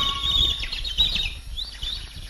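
Small birds chirping in quick, high-pitched runs, with a low rumble underneath.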